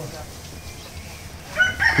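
A rooster crowing, starting near the end after a quiet stretch.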